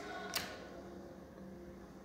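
Quiet room tone: a single short click about a third of a second in, then a faint steady low hum.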